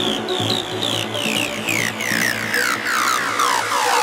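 Uplifting trance music at its close: a quickly repeating synth figure of short falling notes slides steadily lower in pitch over a steady bass. Right at the end the bass cuts out, leaving only a fading echo of the synth.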